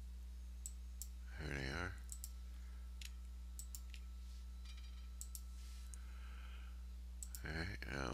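A few scattered computer mouse clicks over a steady low electrical hum, with a brief murmur from a person about one and a half seconds in.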